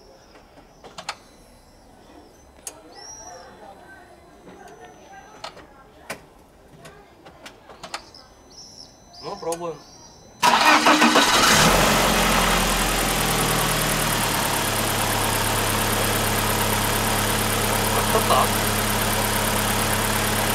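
BMW N42B18 1.8-litre four-cylinder petrol engine started for the first time after its fuel injectors were flushed and refitted: it starts suddenly about halfway through and settles within a few seconds into a steady idle.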